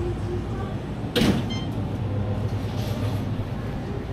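Steady low electrical hum of an open refrigerated display case in a shop, with one short, sharp noise about a second in.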